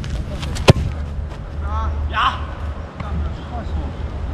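A single sharp thud of a football being struck, about three-quarters of a second in.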